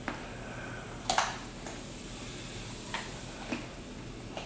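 A deer biting and chewing carrot sticks: a few sharp, irregular crunches and clicks, the loudest about a second in.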